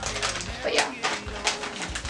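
Clear plastic packaging bag crinkling and rustling in several short bursts as it is handled and pulled open.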